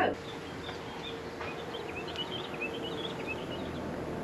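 Small birds chirping, many short high calls in quick succession, over a steady outdoor background hiss and a faint hum.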